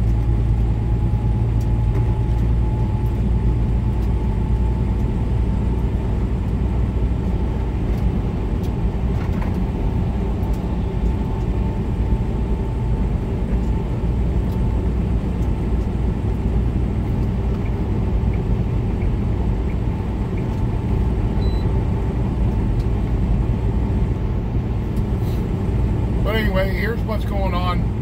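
Semi truck cruising at highway speed, heard from inside the cab: a steady low drone of diesel engine and tyre noise, with a faint steady whine running through it. A voice starts near the end.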